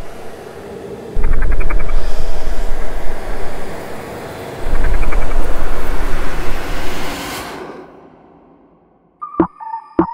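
Cinematic intro sound design for a music track: a rushing noise with two deep bass booms, about a second in and near five seconds, that swells and cuts off suddenly about seven and a half seconds in. After a short silence, sharp short hits with a ringing tone begin near the end as the beat starts.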